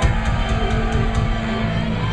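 Live punk rock band crashing into a song all at once: electric guitars, bass and drums start suddenly and loud, with a held low note under steady cymbal and drum hits.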